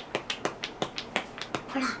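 A small pink handheld toy that the girl calls 'pokipoki' being pressed over and over between the fingers, giving a quick, even run of sharp clicks, about six a second.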